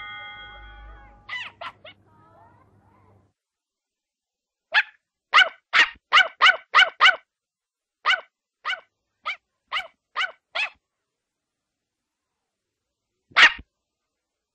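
Cartoon puppy yapping in short, sharp barks: a quick run of six, then about six more spaced roughly half a second apart, and one loudest bark near the end.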